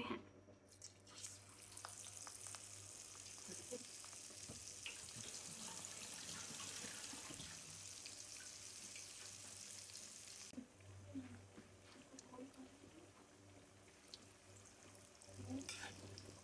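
Spoonfuls of gram-flour (besan) pakora batter sizzling in hot frying oil: a steady bright hiss starts about a second in, then drops to a quieter sizzle with scattered small pops about two-thirds of the way through.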